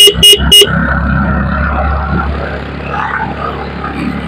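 A vehicle horn sounding three quick, short, loud toots, followed by the steady low rumble of a moving vehicle's engine and road noise.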